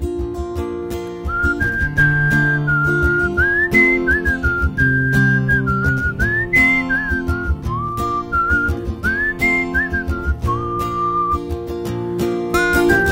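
A whistled melody, sliding up and down between notes, comes in about a second in over a strummed guitar.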